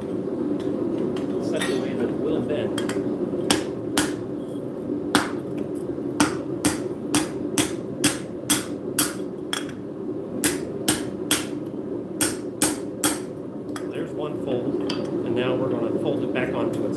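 Hammer blows on a sheet of metal over an anvil, folding it. A few scattered strikes come first, then a run of about two sharp blows a second for some seven seconds, which stops a few seconds before the end.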